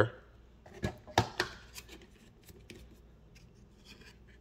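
Light handling noise: a few sharp clicks and knocks in the first second and a half, then faint scattered ticks and rustles, as plastic housing parts and wiring are moved about.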